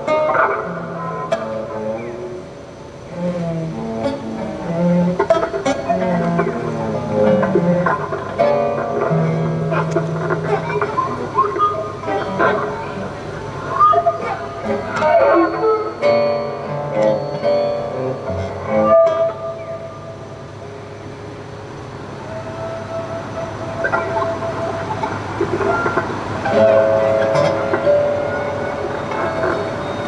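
Free-improvised music on violin, cello and two acoustic guitars: scattered plucked notes against bowed tones, with low cello notes in the first half. It goes quieter for a few seconds past the middle, and held bowed notes come in near the end.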